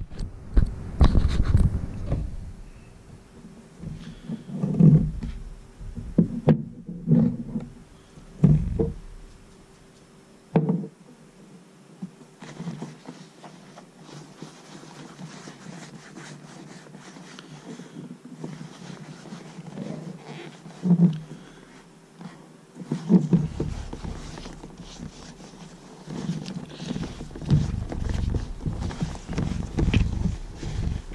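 Hands rubbing conditioner into an old leather baseball glove close to the microphone: leather being rubbed and handled, with irregular dull thumps as the glove is moved and pressed on the table. The handling grows busier near the end.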